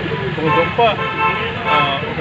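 Speech: a man's voice talking, with street traffic noise behind.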